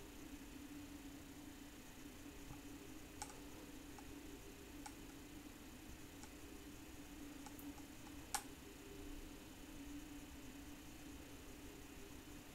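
Near silence: room tone with a low steady hum and a few faint, scattered clicks, the clearest about eight seconds in.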